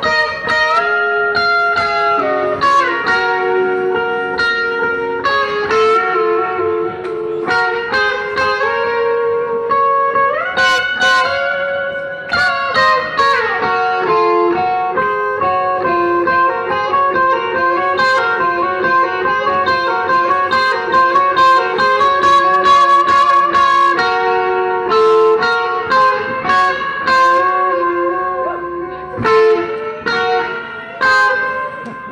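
Electric guitars played live by a rock band: sustained, ringing notes changing in steps, with notes bent up about ten seconds in and sliding back down a few seconds later.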